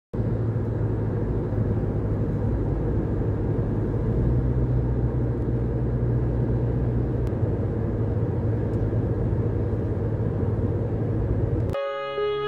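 Steady road and engine noise heard from inside a moving car's cabin, a constant low rumble. It cuts off suddenly just before the end, where music starts.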